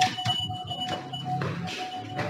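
Electronic doorbell ringing as a steady electronic tone, over background music.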